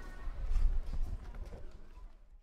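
Footsteps on stone steps: a few sharp clicks over a low rumble, fading out near the end.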